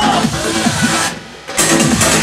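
Loud electronic dance music from a trance DJ set, driven by a fast, steady kick drum. A little after a second in, the track cuts out almost completely for under half a second, then comes back in at full level.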